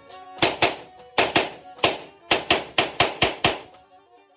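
About a dozen sharp, loud knocks in a quick, uneven rhythm, often falling in pairs, with faint notes of a Black Sea kemençe between them at the start and again near the end.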